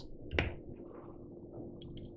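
Quiet room tone with a faint steady hum, one soft click about half a second in and a few faint light ticks near the end.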